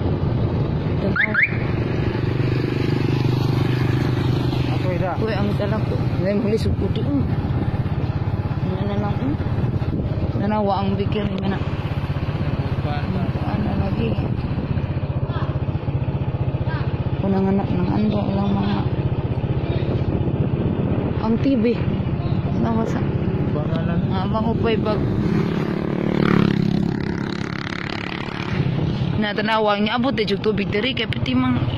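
Motorcycle engine running steadily as the bike rides along, with scattered talk over it.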